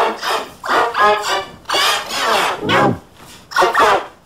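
A voice in about six short shouted bursts, each run through the pitch-shifted, layered 'G Major' chord effect, so that it comes out as a warbling, musical chord rather than plain speech.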